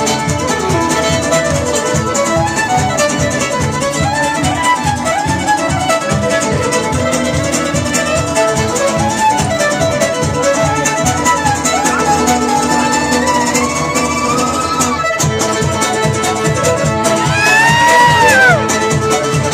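Live fiddle and acoustic guitar playing an upbeat folk tune, the guitar strumming a steady beat of about four to a second under the fiddle melody.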